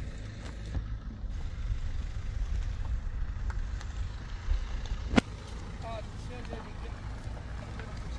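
Wind buffeting the microphone, an uneven low rumble, with faint distant voices. A single sharp click a little past the middle.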